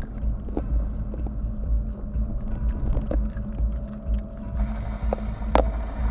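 Inside a moving car's cabin: a steady low road and engine rumble, with many small clicks and rattles from the interior.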